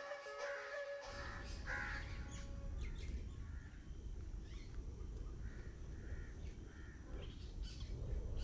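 A flute melody ends within the first second. Then birds call repeatedly in short, harsh, crow-like caws over a steady low rumble of wind on the microphone.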